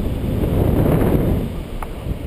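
Airflow of the paraglider's flight buffeting the action camera's microphone: a low, rumbling rush of wind noise that swells in the middle, with one short click near the end.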